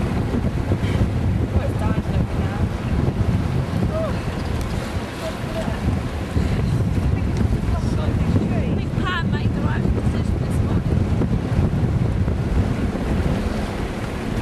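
Strong wind buffeting the microphone aboard a sailing yacht, a steady low rumble, over the rush of the sea.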